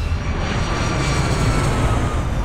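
Airbus A320 airliner's jet engines at takeoff thrust: a loud, steady roar with heavy low rumble and a faint high whine over it.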